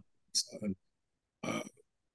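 Only speech: a man's halting voice over a video call, a short clipped sound and then a hesitant 'uh', with pauses between them.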